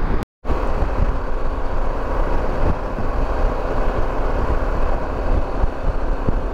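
Harley-Davidson Pan America's V-twin running at highway speed, heard under steady wind rush and buffeting on the camera microphone. The sound cuts out completely for a moment just after the start, then carries on unchanged.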